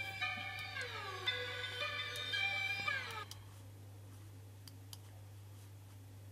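A melodic sample loop playing back, its notes sliding downward in pitch between held tones, going quiet about three seconds in. After that only a steady low hum and a few faint clicks remain.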